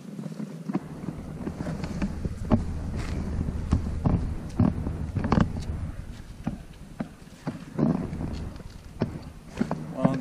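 An Airedale Terrier puppy nosing and bumping at the camera right by the microphone. There is a low rumble of rubbing, broken by irregular sharp knocks, from about a second in until shortly before the end.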